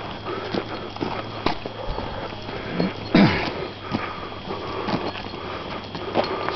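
Footsteps on a dirt road at a walking pace, irregular soft crunches every half second to second. A short, low, falling vocal sound about halfway through.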